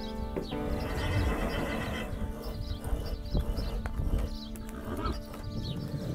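A horse whinnying, one long call from about half a second to two seconds in, over background music.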